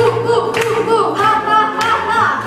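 Children's voices singing a stage-musical number over instrumental accompaniment, with a steady low bass note and two sharp percussive hits about a second apart.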